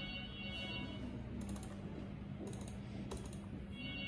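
Three short bursts of quick clicks from a computer keyboard and mouse, about a second and a half, two and a half and three seconds in, over a steady low hum.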